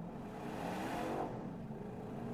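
Holden Caprice V's 6.0-litre L77 V8 under a full-throttle launch from standstill, heard from inside the cabin, revs climbing and growing louder in first gear. The rear tyres are trying to spin up.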